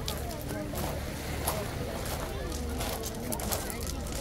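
Voices of many people chattering at once on a busy beach, with footsteps crunching on pebbles about every half second.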